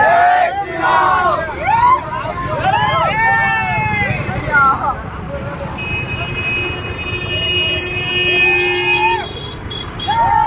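Men shouting chants in rising-and-falling calls over the steady running of motorcycle engines. About six seconds in, a vehicle horn sounds steadily for about three seconds.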